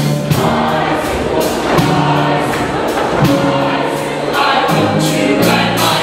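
Mixed show choir singing in harmony over instrumental accompaniment with regular drum hits.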